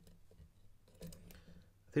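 Faint scratchy ticks and small clicks of a hook pick working the pin stacks of a Euro cylinder lock under light tension, its pins including serrated and spool security pins.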